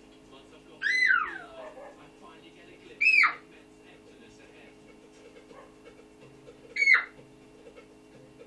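Three short, high-pitched whimpering cries from an animal, about two seconds apart; the first rises and then slides down in pitch. A steady low hum runs underneath.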